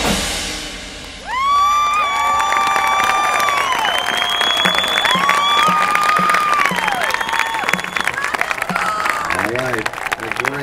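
A marching band's final chord dies away, then about a second in the crowd in the stands breaks into loud applause and cheering, with several long whistles that rise and fall.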